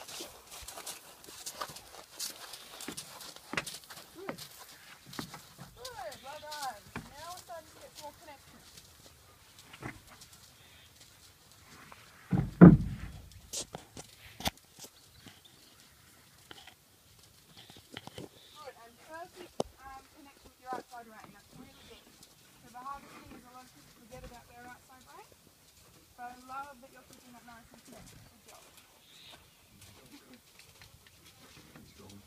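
Hoofbeats of a ridden horse, with faint voices at intervals and one loud thump about halfway through.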